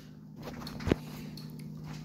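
A single short, sharp click about a second in, over a faint, steady low hum.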